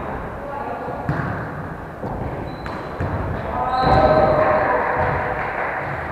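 Volleyball being hit during a practice drill: two sharp smacks, about a second in and again near three seconds, echoing in a large gym hall. Players call out between the hits, loudest around four seconds in.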